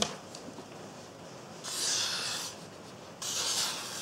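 A knife edge slicing through a sheet of paper, a papery hiss heard twice, about a second and a half apart and each under a second long: a paper-cutting test of the edge's sharpness.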